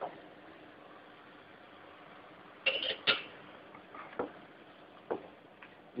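Metal serving utensils clinking against a frying pan of caramel a few times, the loudest pair about three seconds in, as pineapple rings are laid in, over a faint steady hiss.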